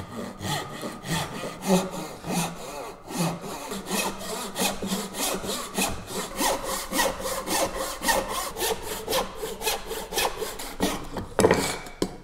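Hand crosscut saw cutting across a beech board in steady back-and-forth strokes, the cut breaking through near the end.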